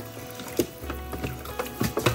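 Background music with steady low bass notes, over tap water running into a stainless steel sink as a raw duck is washed. A couple of sharp clicks stand out.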